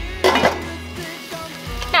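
Background music, with a glass-and-metal pot lid clinking against a cooking pot about a quarter second in.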